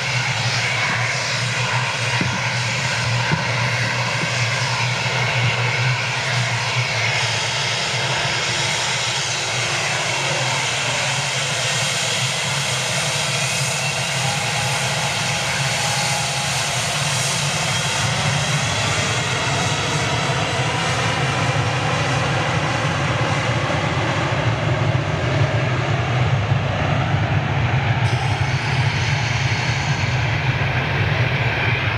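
Boeing 757 jet engines running steadily as the airliner rolls slowly along the runway, a smooth engine roar with whining tones that drift slowly down and back up in pitch.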